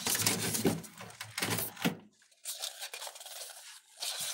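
Handling noise: a clear plastic sheet and paper rustling and rubbing in irregular bursts for about two seconds, then a fainter scraping.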